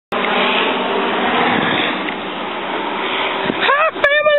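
A loud, steady rushing noise with no clear pitch; near the end a person's voice rises into a drawn-out call.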